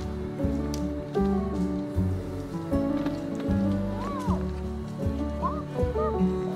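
Calm instrumental background music, with steady held chords over low notes that change about once a second.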